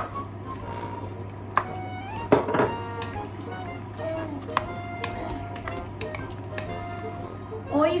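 Background music with held notes over a plastic spatula stirring and scraping simmering minced beef and vegetables in a casserole pot, with a few sharp knocks against the pot. A low steady hum runs underneath.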